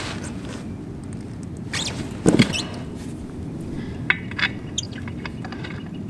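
Steel lug nuts being spun by hand onto the studs of an implement wheel hub: small scattered metallic clicks and clinks, with a heavier knock about two seconds in.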